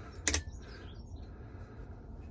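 A quick double click about a quarter second in, then faint low noise: a Briggs & Stratton valve spring compressor being let off a small engine's intake valve spring, the valve keepers taking the load.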